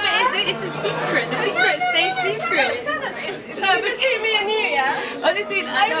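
Speech only: two women talking and laughing, with chatter in the room behind them.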